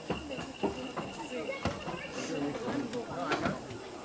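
Faint voices of people talking in the background, with a few sharp clicks and a thin steady high tone that stops about two and a half seconds in.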